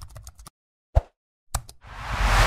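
Sound-effect clicks from an animated search-bar intro. A quick run of small typing-like clicks comes in the first half second, then a single pop about a second in, then a couple of clicks just before the end, with silence between them.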